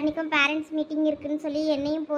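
Speech only: a high-pitched voice talking without a break, an animated character's dialogue in Tamil.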